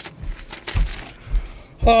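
Sheets of paper rustling as a handwritten letter is moved about, with a few low thumps of handling. A man's voice starts at the very end.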